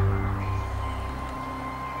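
Background music: held, sustained chords over low bass notes, with the bass changing about a second in.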